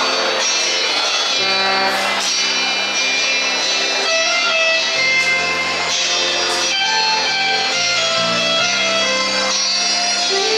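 Live band playing an instrumental passage of 1960s–70s pop-rock: guitar over a bass line that moves from note to note about once a second, with no singing.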